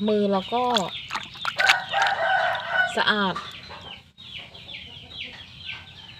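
Chickens clucking and peeping, with a rooster crowing about two seconds in.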